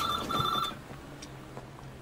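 A payphone in a red telephone box ringing: one British-style double ring, two short warbling bursts back to back in the first second.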